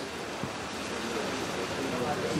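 Steady outdoor background noise with faint, indistinct voices of a gathered crowd, and no clear speaker in front.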